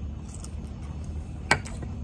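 Biting into and chewing a charred, campfire-roasted hot dog, with one sharp click about one and a half seconds in, over a steady low outdoor rumble.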